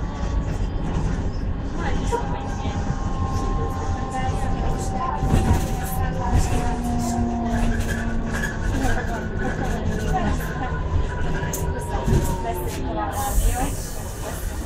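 Trolleybus in motion heard from inside: low road rumble under the electric drive's whine at a few pitches, one of them falling slowly, with scattered rattles. Near the end a burst of air hiss, typical of the pneumatic brakes or doors as it pulls into a stop.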